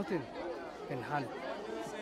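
Speech only: a man talking, with chatter of other voices behind.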